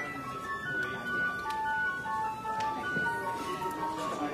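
Church organ playing a slow melody of held notes over softer sustained chords.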